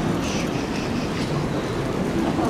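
Steady low rumbling outdoor background noise, with a few faint short high-pitched sounds in the first second.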